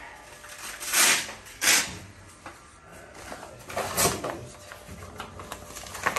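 Fabric positioning straps on an X-ray patient stand being handled and pulled loose. There are three short scratchy rips: two close together about a second in, and one more near the middle.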